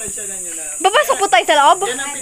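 Voices, with one loud voice calling out in swooping, rising and falling pitch from about a second in, over a steady high-pitched hiss of insects.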